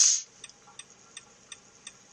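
A brief hiss right at the start, then a car's turn-signal indicator clicking faintly and evenly, about three clicks a second.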